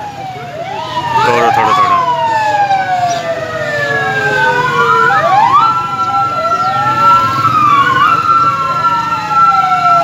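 Several police vehicle sirens wailing at once, their pitches sliding up and down and crossing one another. From about five and a half seconds in, one siren holds a single steady tone while the others keep wailing.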